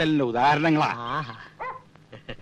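A man speaking in a drawn-out phrase for the first second or so, then a brief short sound shortly after.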